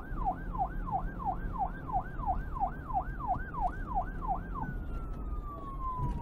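Siren in a fast yelp, sweeping up and down about three times a second over a low rumble. Near the end it changes to one long, slowly falling tone.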